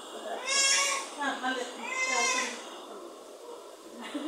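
A young child squealing twice in a high pitch, each squeal about half a second long and about a second and a half apart.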